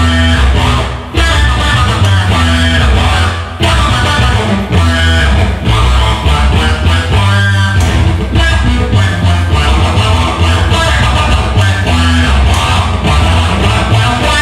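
Live rock music led by an offset-body electric guitar played through an amplifier, loud and continuous with a heavy low end.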